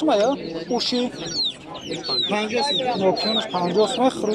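Chickens clucking and calling, with many short, high, falling chirps, amid the voices of people nearby.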